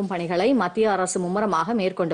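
Only speech: a woman reading the news in Tamil, narrating without pause.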